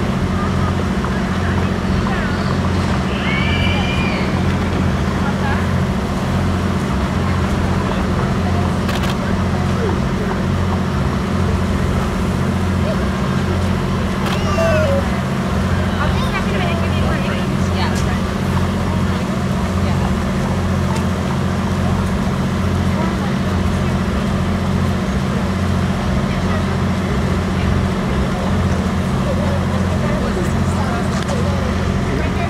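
A steady low engine-like hum runs throughout, under the indistinct chatter of a crowd of voices.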